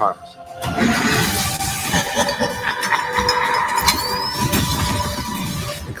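Action sound effects from a film trailer: loud, dense vehicle and engine noise with a steady hum under it. A short rising whine comes about four seconds in. The noise starts about half a second in and cuts off sharply just before the end.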